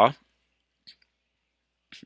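Near silence in a pause between words, broken by one faint, short click about a second in.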